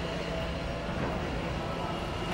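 Steady background noise with a faint constant low hum, and no sudden sounds.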